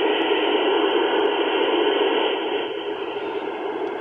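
Icom IC-705 transceiver's speaker giving a steady hiss of receiver noise, cut off above and below like a speech passband, easing slightly in the last second.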